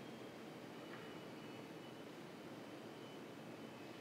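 Quiet room tone: a faint, steady hiss with a thin high tone running through it.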